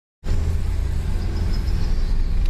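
Steady low rumble of a car's engine and tyres heard from inside the cabin while driving, starting abruptly a moment in.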